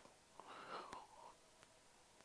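Near silence, with a faint, brief murmured voice about half a second in.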